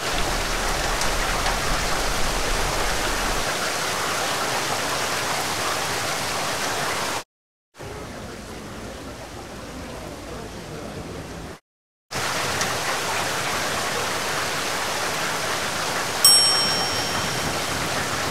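Steady rain falling, an even hiss in three stretches broken by two short silences, the middle stretch quieter. About two seconds before the end a single high bell ding rings out and fades.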